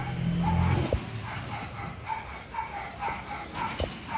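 Goats bleating in a pen: a loud low call in the first second, then shorter, higher calls that repeat.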